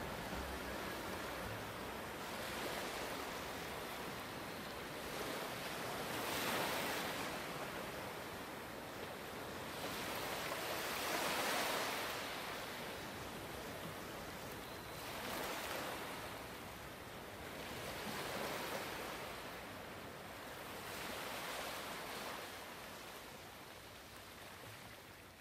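Ocean surf, waves washing in and drawing back, each swell rising and easing every few seconds and fading near the end.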